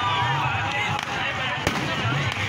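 People's voices and chatter throughout, with one sharp firework bang about one and a half seconds in.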